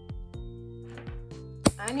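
Metal nail clippers clicking as they snip plastic nail tips: a few light clicks, then a loud sharp snap near the end. Background music with sustained notes plays underneath.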